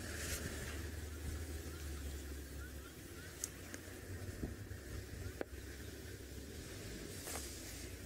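Faint outdoor ambience: a low steady rumble under a light hiss, with a few faint high chirps about two to three seconds in and a single sharp click about five seconds in.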